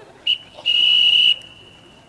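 A track official's whistle: a short blip, then one long, steady, high-pitched blast lasting about two-thirds of a second.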